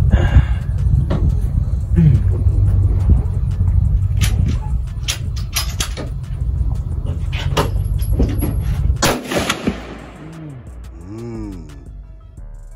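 Several rifle shots from an AR-style rifle at an outdoor range: sharp cracks a second or two apart over a steady low rumble. Music comes in near the end.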